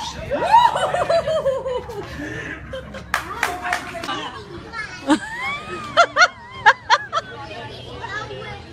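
People's voices exclaiming and laughing: a loud rising cry about half a second in that falls away in steps, then a run of short, high laughs between five and seven seconds. A few sharp knocks come about three seconds in.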